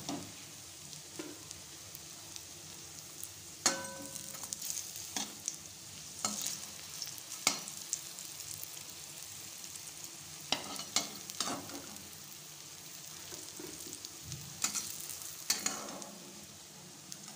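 Raw banana kofte deep-frying in hot oil, a steady sizzle, with a metal spatula scraping and knocking against the metal pan every second or two as they are turned. One knock about four seconds in rings briefly.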